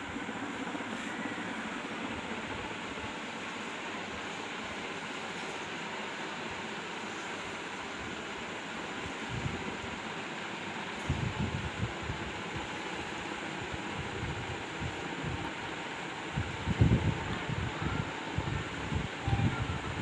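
Steady background noise, an even hiss and rumble with no clear tone. Irregular low bumps come in about halfway through and again near the end.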